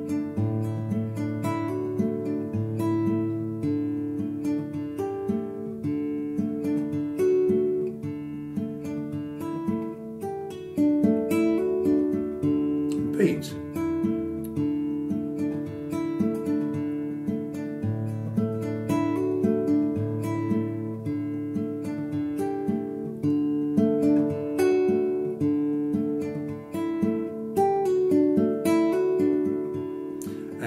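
Nylon-string classical guitar fingerpicked in a steady thumb-and-finger pattern on a D chord. It moves through D sus4 and D add2 shapes, with pull-offs and hammer-ons on the top E string over a repeating bass note.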